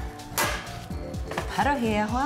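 A metal baking tray set down on the stovetop grates, with a single sharp clank about half a second in.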